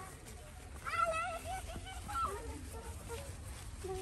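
Children's voices calling out briefly a couple of times, softer than the nearby talk, over a steady low background rumble.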